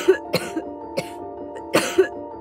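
Four short, sharp coughs over soft mallet-percussion music, one near the start, then about 0.35 s, 1 s and 1.75 s in.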